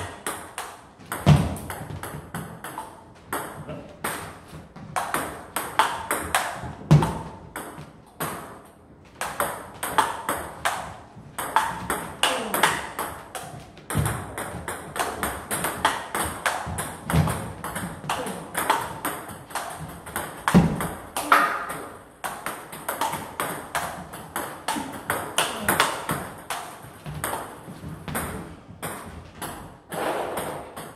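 Table tennis rally: the plastic ball clicking off rubber-faced bats and bouncing on the table in quick, continuous alternation, a chopper defending against topspin attacks with a bat faced in Yasaka Rakza XX rubber. A few heavier knocks stand out among the clicks.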